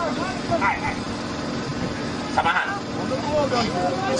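Indistinct voices of people talking, over a steady low hum.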